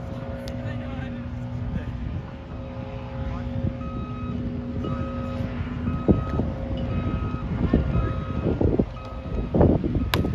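A heavy vehicle's engine running steadily, with its reversing alarm beeping about once a second from about four seconds in: the vehicle is backing up.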